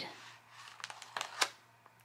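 Faint crinkling of paper and a clear plastic scrapbook sleeve being handled, with a few light clicks about a second in, as a bundle of ticket stubs and papers is pulled out of the pocket.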